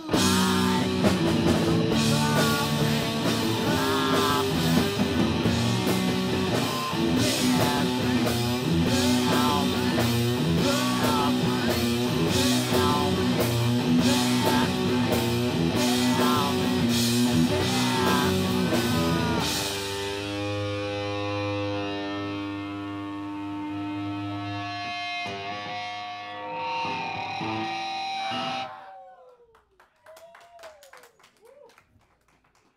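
Live rock band playing loud electric guitar, bass and drums. About two-thirds of the way through, the drums stop and the guitar and bass hold ringing chords that fade out, ending the song near the end.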